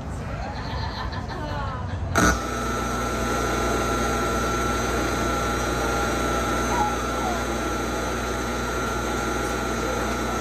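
A sudden loud pop through the sound system about two seconds in, then a steady electrical hum with a thin high whine over it, as the stage keyboard's setup is handled.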